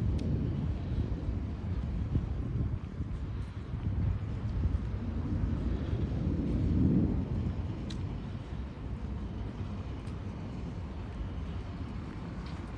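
Low outdoor city rumble, swelling noticeably about five to seven seconds in and easing off afterwards, with a few faint ticks.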